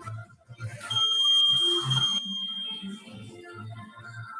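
A long, high, steady electronic beep from a workout interval timer, starting about a second in and fading after about two seconds, marking the end of a Tabata interval. Music with a steady beat plays under it.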